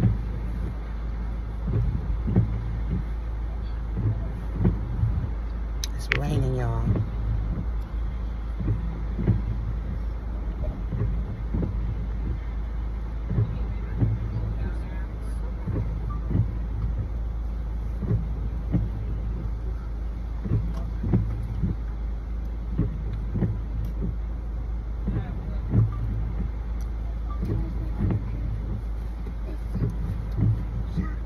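Steady low rumble of an idling car heard from inside the cabin, with short faint low sounds coming and going every second or so and a brief wavering sound about six seconds in.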